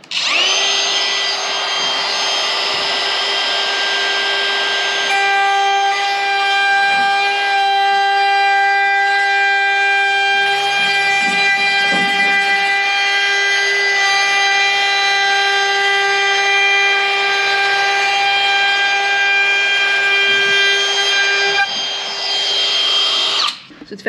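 DeWalt router fitted with a 1.5 mm slot cutter, starting up and running at a steady high whine while cutting the groove for T-trim into the edge of a gloss-faced plywood cupboard door. Its tone shifts about five seconds in, and it winds down and stops just before the end.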